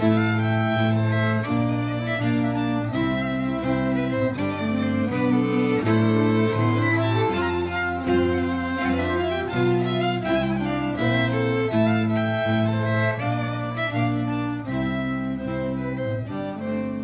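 Polish folk string band of four fiddles and a bowed double bass playing an instrumental tune: fiddle melody over held bass notes.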